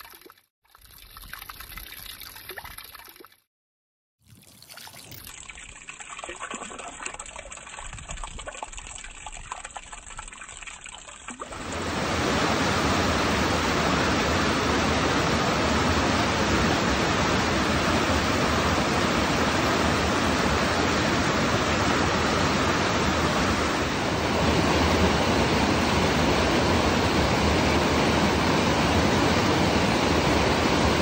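Water trickling and splashing into a shallow pool, in short takes broken by brief silent cuts. From about twelve seconds in, the much louder, steady rush of churning river water.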